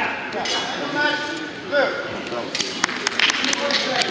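Steel rapier and dagger blades clinking in a fencing exchange: a quick run of sharp metallic clinks starting about two and a half seconds in, after a short stretch of voices.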